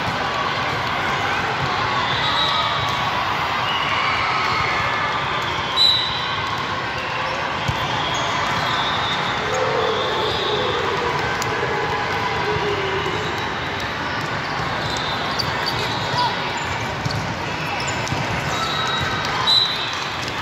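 Busy volleyball tournament hall: a steady din of many voices and balls being played across several courts, with a few sharp, louder hits standing out about six seconds in, around sixteen seconds, and near the end.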